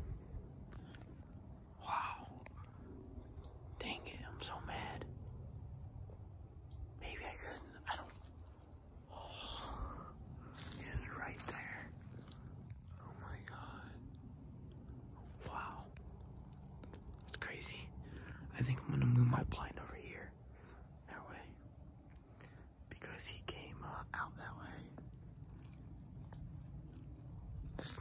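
Quiet whispering with intermittent rustling, and one louder low-pitched burst about nineteen seconds in.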